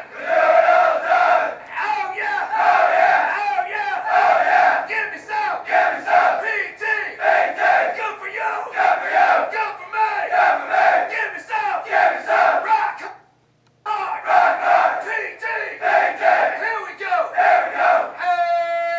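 Marine recruits shouting in unison, loud repeated group yells in a rhythmic pattern, broken by a short silence about 13 seconds in.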